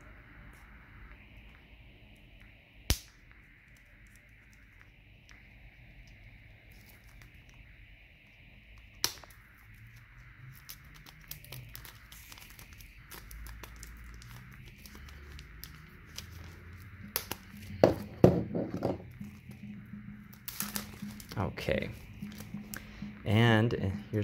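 Clear plastic shrink wrap being cut with a serrated knife and peeled off a plastic toy capsule: faint scraping and crinkling with two sharp clicks early on, growing busier and louder in the second half.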